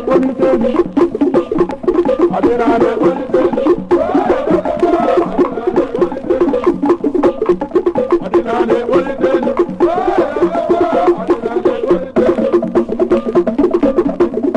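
Traditional percussion music: a fast, dense run of sharp wooden-sounding strikes and drums, with a pitched melody rising and falling over it.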